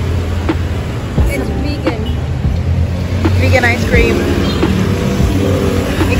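Street traffic: a vehicle engine running close by with a steady low hum that fades a little past the middle, a few light knocks, and voices or music briefly around the middle and again at the end.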